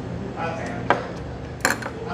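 Tableware clinks: a small click about a second in, then a louder clink near the end, as a bowl and chopsticks are set down on a table.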